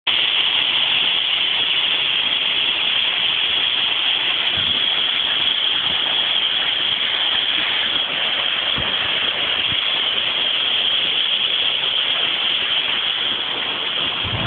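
Waterfall: a steady, unbroken rush of falling water, loud and close.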